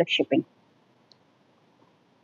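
A woman's voice finishes a few quick syllables at the very start. Then there is quiet room tone with a single faint click about a second in.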